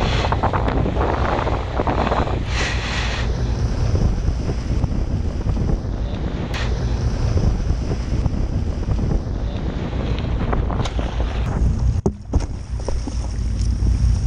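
Wind buffeting an action-camera microphone over the rush and splash of sea water along a boat's hull, with the boat's engine rumbling low underneath. The sound drops out briefly about twelve seconds in.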